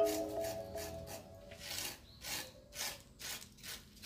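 A small hand tool scraping and carving cement on a relief wall, in quick, irregular strokes, roughly three a second. Music fades out at the start.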